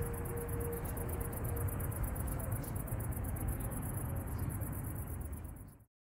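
Evening outdoor ambience: a steady murmur with a fast, even high-pitched chirping over it. Soft music fades out in the first second, and all sound cuts off suddenly near the end.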